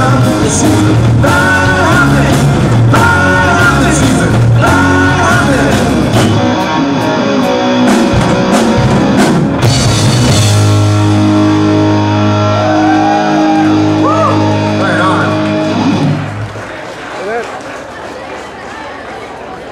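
Live rock band with electric guitars, bass, drums and a singer playing the closing bars of a song: sung lines over drum hits, then a final held chord that rings for several seconds and cuts off about sixteen seconds in, after which the sound drops to much quieter room noise.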